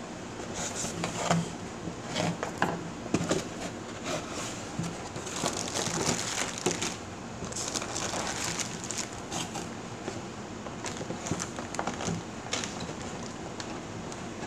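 A cardboard toy box being opened by hand, with irregular scrapes, taps and clicks of the cardboard and crinkling of plastic packaging.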